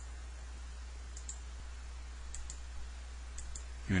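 Faint computer mouse clicks, in three pairs about a second apart, over a low steady electrical hum.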